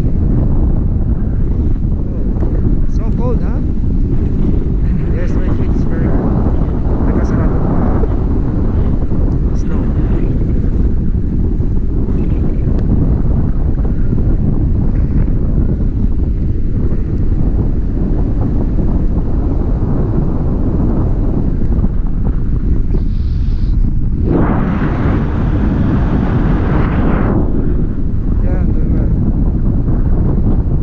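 Wind buffeting the microphone of a camera carried on a tandem paraglider in flight, a steady low rumble. A louder, brighter rush of wind comes about three-quarters of the way through and lasts a few seconds.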